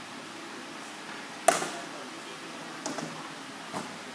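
Sharp impacts from a sword-and-shield sparring bout: one loud smack about a second and a half in, echoing briefly, then three lighter knocks near the end.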